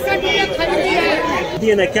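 People talking over one another: the chatter of vendors and shoppers at vegetable stalls.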